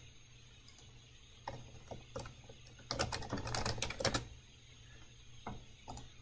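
Computer keyboard typing: a short run of keystroke clicks that comes thickest about three to four seconds in, followed by a couple of single clicks.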